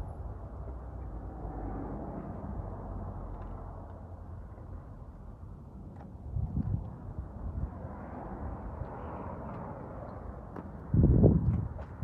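Steady low outdoor background rumble on the microphone, with a brief low swell a little past halfway and a louder, longer low buffeting about a second before the end.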